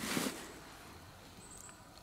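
A brief rustle of dry grass and leaves as someone moves through them, followed by quiet outdoor background.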